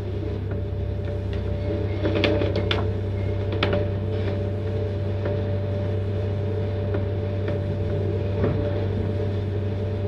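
Steady electrical hum and hiss, the noise floor of an old lecture recording, with a few faint clicks between two and four seconds in.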